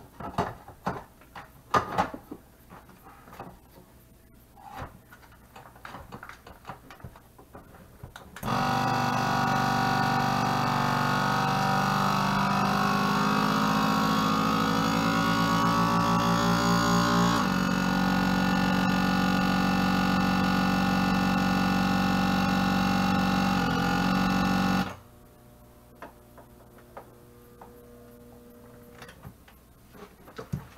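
Countertop vacuum food sealer's pump running for about sixteen seconds as it draws the air out of a bag: a loud, steady hum that starts about eight seconds in, slides in pitch as the vacuum builds, shifts about halfway through, and cuts off suddenly. Before it starts, a few clicks and knocks as the bag is set in and the lid pressed shut.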